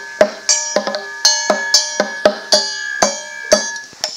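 Small hand gong and drum of Cantonese lungzau (dragon-boat song) accompaniment, struck in a quick, even rhythm of about three to four strikes a second, the gong's bright ringing tones carrying on between strikes as the introduction before the singing.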